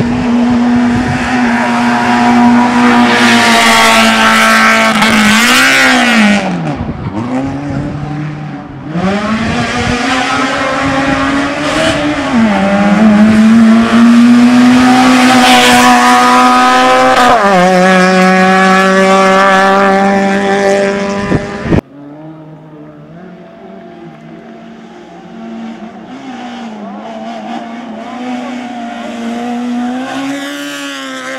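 Citroën AX hill-climb race car driven hard up a mountain road, its engine note loud and repeatedly rising and falling as it climbs and drops through the revs. About 22 seconds in the sound cuts off abruptly to a quieter, more distant engine note.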